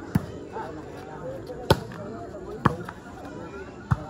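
A volleyball being hit four times during a rally: sharp smacks about a second apart, over steady crowd chatter.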